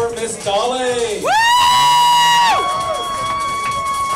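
A shrill whoop from the crowd, gliding quickly up to a very high pitch and held for over a second before dropping away, over crowd chatter and background music.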